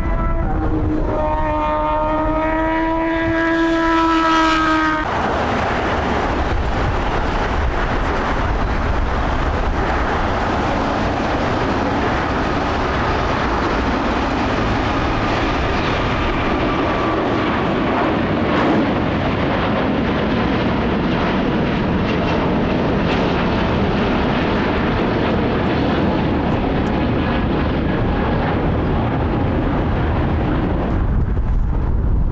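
Takeoff roar of an Airbus A350-1000's two Rolls-Royce Trent XWB-97 turbofans as the jet rolls, lifts off and climbs away, a steady loud rumble with a hiss. Near the start, a held tone with overtones sounds over it for about four seconds.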